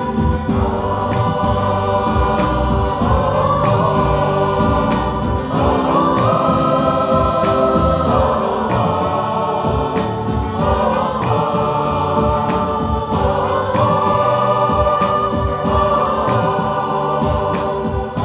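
A choir singing in held chords that change every couple of seconds, accompanied by an electronic keyboard with a steady beat.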